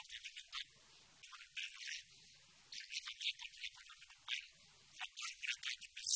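Small birds chirping faintly in quick clusters of short, high-pitched notes, with brief gaps between.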